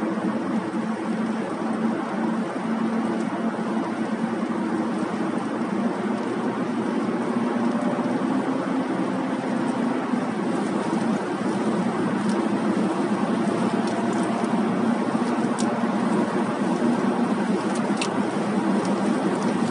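Steady road and engine noise of a car cruising at highway speed, heard from inside the cabin: an even, low hum of tyres and drivetrain that holds level throughout.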